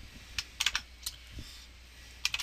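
Computer keyboard keystrokes: about five quick key presses in the first second, then a pause.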